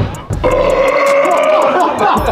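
A man's long, loud burp lasting about a second and a half, brought up by a can of carbonated water he has just chugged.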